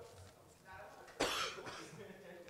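A person coughs once, sharply, a little over a second in, over a faint murmur of voices.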